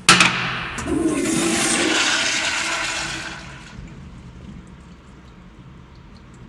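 Tankless commercial toilet's flushometer valve flushing: a sudden loud burst of rushing water as the valve opens, a steady rush for about three seconds, then a fade to quiet about four seconds in.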